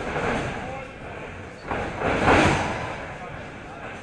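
Wrestlers' bodies landing on the ring canvas during arm drags and a head scissors, with crowd chatter; a louder burst of noise about two seconds in.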